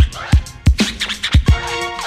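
Old-school electro hip-hop instrumental: drum-machine kicks in a quick steady beat, about three hits a second, under sustained synth chords, with turntable scratches cut in.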